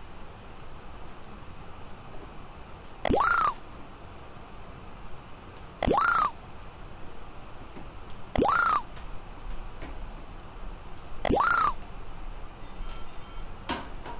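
Four identical short rising electronic chirp-beeps, about two and a half to three seconds apart. Each one is the measurement software confirming a point captured as the Master3DGage arm's probe touches the corner of the part.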